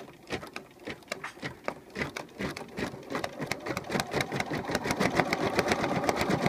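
Bernina Aurora 440 QE sewing machine stitching out a machine-embroidery design, with its embroidery module moving the hoop. The needle strokes start slowly, then speed up and grow louder as the machine gets going.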